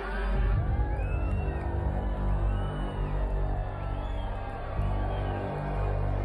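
Music, with a stadium crowd under it cheering and whooping. Single voices rise and fall in pitch a few times.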